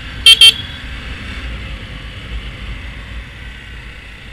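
Two quick, very loud toots of a Honda Grom's horn, a fraction of a second apart just after the start, over the steady low rumble of the motorcycle under way.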